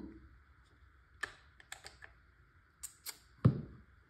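A few short, sharp clicks and taps of hard parts of a Tippmann TiPX paintball pistol being handled, spaced out over a couple of seconds with quiet between.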